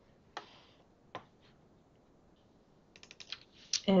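Computer keyboard and mouse clicks: two separate clicks in the first second or so, then a quick run of light clicks near the end.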